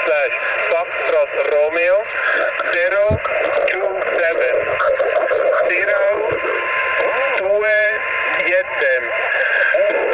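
Ham radio transceiver's speaker receiving a distant station's voice, thin and narrow-band, carried through a constant hiss of band noise with a faint steady whistle.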